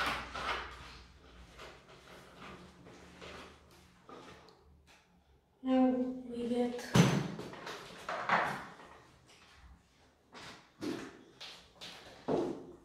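Handling sounds: a plastic water bottle's screw cap being twisted and the bottle handled, then scattered knocks and thumps of things moved on a table, the loudest a little past halfway. A short voice sounds briefly about halfway through.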